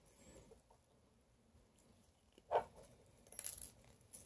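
Faint handling sounds of gloved hands setting metal pins into a foam board: a short knock about two and a half seconds in, then a brief rustle.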